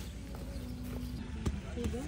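Quiet outdoor background with a faint held voice sound, then two short sharp clicks about a second and a half in.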